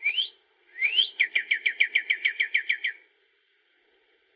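A bird singing: a short rising note, then a rising sweep that runs into a fast series of about a dozen falling notes, about seven a second, stopping about three seconds in.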